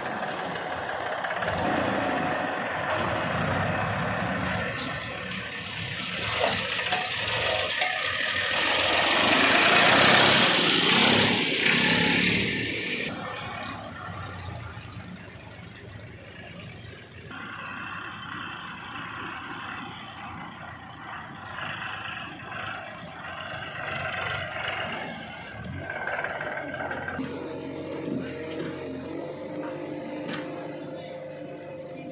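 Diesel tractor engines running as loaded tractors drive over a dirt track, loudest about ten seconds in. In the later part the engine sound is quieter and steadier, while a Case 851EX backhoe loader loads soil into a tractor trailer.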